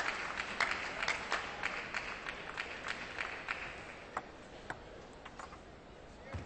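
Scattered audience applause after a point, dense at first and thinning out within a few seconds to a few isolated claps before fading away.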